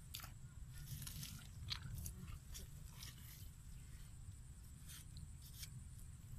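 Faint outdoor ambience: a steady low rumble with scattered short crackles and clicks.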